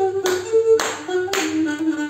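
Cretan lyra playing a melody while three loud bursts of hand-clapping sound about half a second apart.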